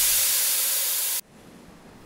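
Sound-effect hiss of a burst of steam, steady and loud, cutting off suddenly just over a second in.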